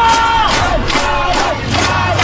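A crowd shouting while banging metal pots and pans, a quick clatter of about four strikes a second.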